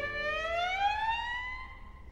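Solo violin sliding slowly upward in a glissando, about an octave, then holding the top note as it fades.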